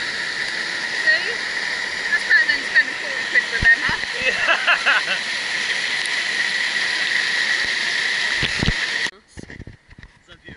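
Man-made waterfall pouring down a wall into a pool, a steady heavy rush of falling water that cuts off abruptly about nine seconds in.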